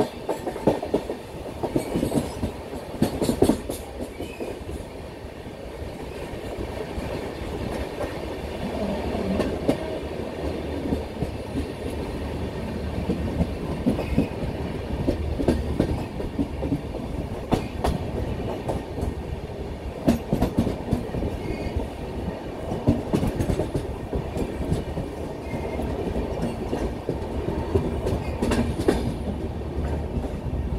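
Passenger express train's coach wheels rolling on the rails: a steady rumble with irregular clicks and clacks from rail joints, heard from the moving coach.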